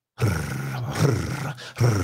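A man's low, drawn-out laugh: one long held burst of over a second, then a short second burst near the end.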